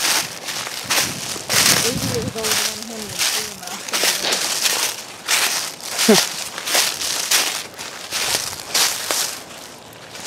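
Footsteps crunching through deep dry fallen leaves at a walking pace, about two steps a second.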